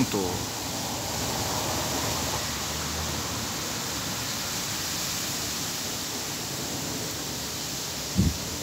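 Strong, gusty wind rushing through palm trees as a cumulonimbus storm cloud passes, a steady noise of wind and thrashing fronds.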